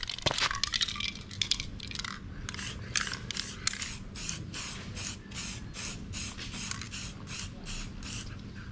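Aerosol spray-paint can spraying in many short hissing bursts, coming about three a second from about two and a half seconds in.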